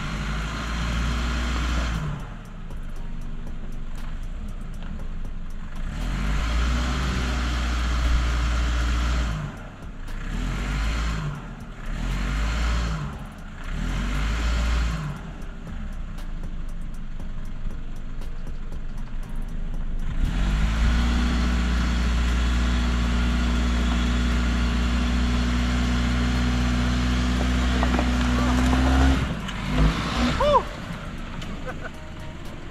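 Toyota RAV4 engine revving as it works to pull free of sticky, salty mud on traction mats in mud-and-sand mode. Several short revs rise and fall, then the engine is held at steady high revs for the last third before easing off near the end.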